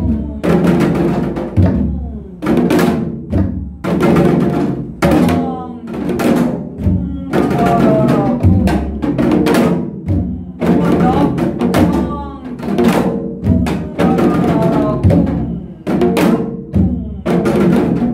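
Janggu (Korean hourglass drum) played in gutgeori jangdan, the slow 12/8 pattern of deong, gideok, kung and rolled deoreoreoreo strokes, with sharp strokes at a steady pulse. A woman's voice sings along over the drumming.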